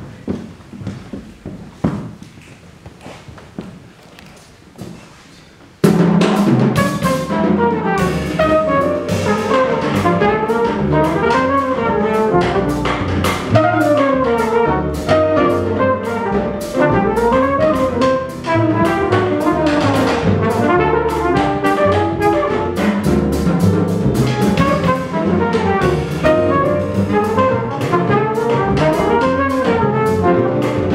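A small jazz combo starts playing together about six seconds in, after a few quiet seconds with soft knocks. Trumpet and saxophone play over piano, upright bass and drum kit.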